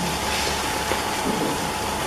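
Steady hiss of room and recording noise with a faint high hum, unchanged throughout.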